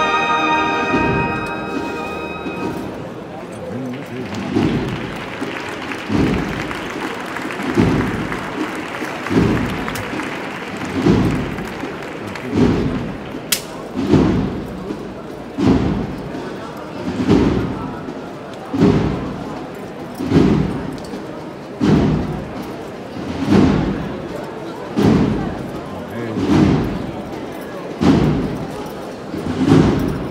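A brass band's march ends in the first couple of seconds; then a single drum beats a slow, steady procession cadence, one deep beat about every one and a half seconds, over crowd chatter.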